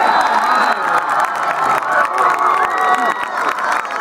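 Sideline spectators cheering and shouting, many voices overlapping, with a few long held calls.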